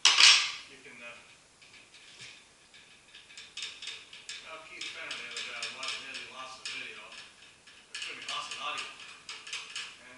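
A loud metallic clank, then a long run of quick clicking and rattling as a milling machine's mechanism is worked by hand.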